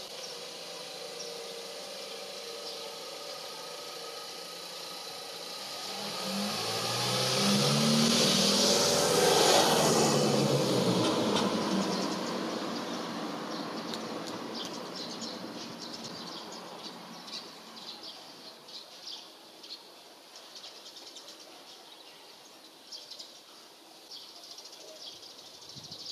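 A road vehicle passes by: engine and road noise build up, peak about a third of the way in with the engine note sliding in pitch, then fade away slowly. Small birds chirp in the later part.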